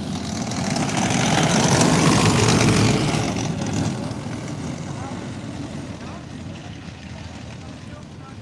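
Kettenkrad half-track motorcycle driving past on a dirt track, its engine and tracks growing louder to a peak about two to three seconds in, then fading as it moves away.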